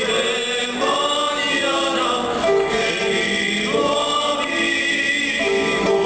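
Live mariachi ensemble playing, with voices singing over long held notes that change every second or so.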